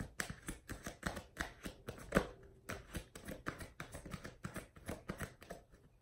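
Oracle cards being handled and sorted by hand: a run of quick card flicks and taps, the loudest about two seconds in.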